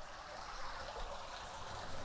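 Small garden waterfall: water running down a stacked-stone wall into a shallow tiled pool, a soft, steady rush of water.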